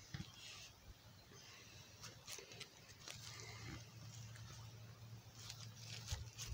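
Near silence: faint outdoor background with a low steady hum and a few soft clicks.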